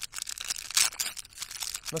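Snack-bar wrapper being torn open and crinkled by hand: a quick run of crackles, loudest a little under a second in.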